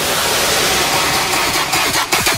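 Dubstep track in a breakdown: the bass and beat drop out and a steady, noisy synth wash fills the gap.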